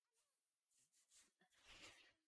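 Near silence: room tone with only very faint, indistinct traces.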